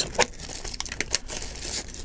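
Packaging being handled, rustling and crinkling, with a few light clicks as an accessory is taken out of its box.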